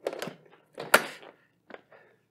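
Plastic blender lid and jug being fitted and pressed into place: two short clattering knocks, the second with a sharp click about a second in, then a faint tick near the end.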